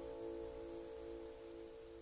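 Final acoustic guitar chord ringing out, its held notes beating slowly as they fade away.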